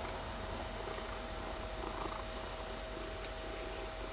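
Domestic cat purring steadily, under a faint steady electrical whine.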